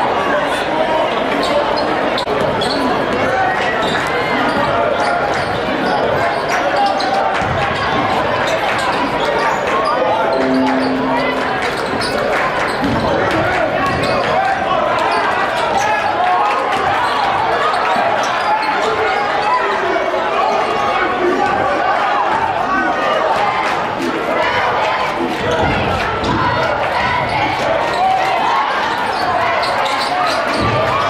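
A basketball being dribbled on a hardwood gym floor, with the crowd's voices and chatter filling a large, echoing gym. A short steady tone sounds once, about eleven seconds in.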